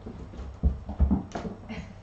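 A cat's paws thudding on timber floorboards as she leaps and lands while chasing a toy: two heavy thumps in quick succession about halfway through, then a sharper knock and a brief scuffling rustle.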